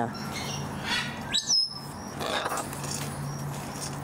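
A bird gives a short, sharp rising chirp about a second and a half in. Under it are faint, evenly repeated high chirps and a steady low hum.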